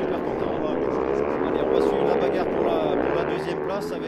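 Several racing motorcycles' engines revving as a pack accelerates past, the pitch climbing and dropping with throttle and gear changes, overlapping engine notes.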